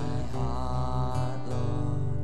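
Live worship song: a man's voice singing over acoustic guitar, with sustained low notes underneath.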